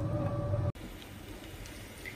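Lidded pan boiling vigorously on a gas stove: a steady low rumble with a hum, cut off abruptly a little under a second in, leaving only faint low noise.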